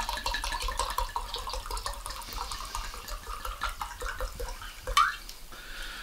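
Wine being poured from a glass bottle into a glass, a continuous gurgling splash of liquid.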